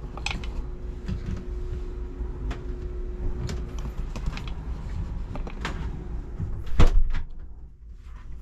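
A few scattered clicks and knocks from cabin cupboard doors and latches being handled, the loudest a knock about seven seconds in, over a low steady hum.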